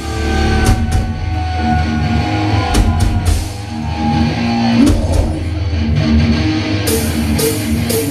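Thrash metal band playing live: distorted electric guitar, bass and drum kit. Held guitar notes ring over the first half, with cymbal crashes throughout and a run of them near the end.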